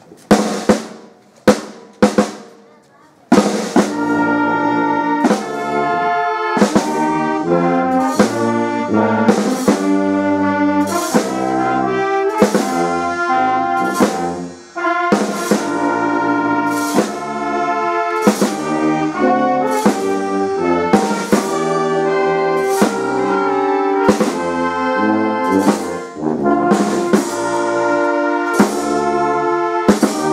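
A brass band with drums playing a march: a few single drum strokes at first, then the brass comes in about three seconds in, with drum strokes marking a steady beat.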